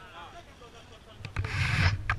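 A rubbing, scraping noise right at the camera's microphone. It starts about a second and a half in and grows louder as the bike-mounted camera is jolted and tips upward.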